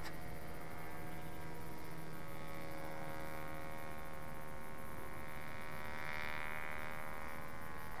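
Distant steady drone of a radio-controlled model Gypsy Moth's motor and propeller in flight, one even hum that swells slightly about six seconds in.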